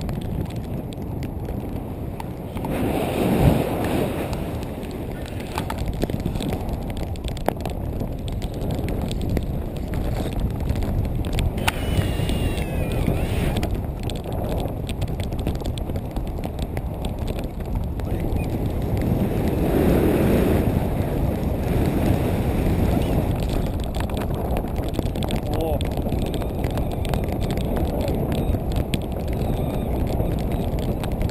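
Rushing wind buffeting an action camera's microphone on a pole held out from a paraglider in flight, a steady loud rumble that swells twice.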